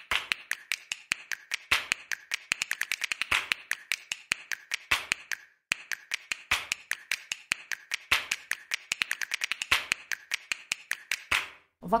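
A rapid, uneven run of sharp clicks and snaps, a percussive soundtrack with no melody, with a brief break about halfway through.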